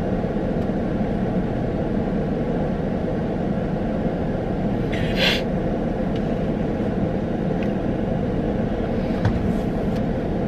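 Steady low rumble inside a parked car's cabin with the engine running and the ventilation fan blowing. A brief breathy hiss about five seconds in.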